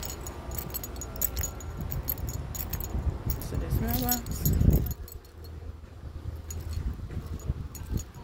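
A bunch of keys jangling with the walker's steps: many small irregular metallic jingles, busiest through the first five seconds and sparser after. A brief loud low rumble comes about four and a half seconds in.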